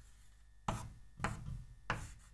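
Chalk writing on a chalkboard: three short, sharp strokes of the chalk about half a second apart as letters are drawn.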